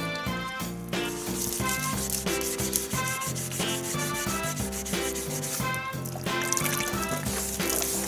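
800-grit waterproof sandpaper rubbed back and forth by hand on a car's painted bumper, a rasping scrub that starts about a second in and pauses briefly near the end, as peeling clear coat is sanded back. Background music plays throughout.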